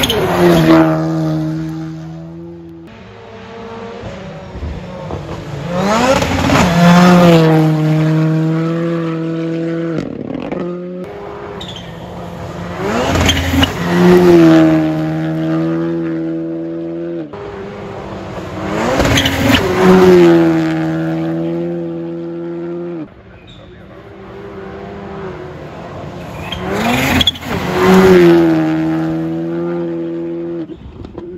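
Rally cars at full speed on a gravel stage passing one after another, about five passes in all. Each engine note rises to a loud peak as the car flies by, then drops in pitch and holds as the car heads away.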